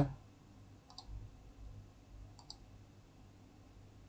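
Faint computer mouse clicks over quiet room tone: a quick pair of clicks about a second in, and another pair about two and a half seconds in.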